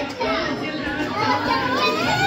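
Several children's and adults' voices talking and calling out over one another.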